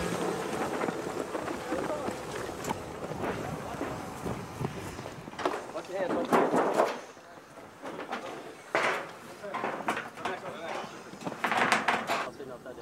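Handling noise, rustle and gear rattle from a camera carried at a run, with scattered clicks and knocks. Shouted voices that can't be made out rise over it about halfway through and again near the end.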